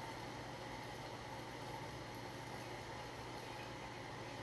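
Faint, steady room noise with a low hum underneath; no distinct eating sounds stand out.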